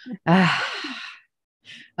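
A woman's single breathy, laughing exhale, falling in pitch and fading out after about a second, followed by a short intake of breath before she speaks.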